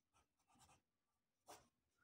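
Very faint scratching of a pencil writing on paper, with one slightly louder stroke about one and a half seconds in.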